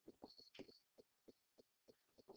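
Near silence with faint, irregular soft taps of a stylus writing a word on a pen screen.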